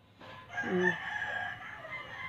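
A rooster crowing: one long call starting about half a second in and lasting about a second and a half, with a brief human voice sound under its start.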